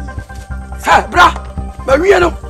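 Background film music with a dog barking three times over it: two quick barks about a second in and a third near the end.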